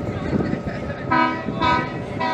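A multi-tone horn sounds two short blasts about a second in, several steady pitches together like a chord.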